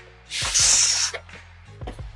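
A female carpet python gives one loud defensive hiss, lasting under a second, while being handled off her eggs.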